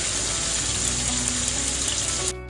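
Chicken pieces frying in shallow oil in a pan, sizzling with a loud, steady hiss.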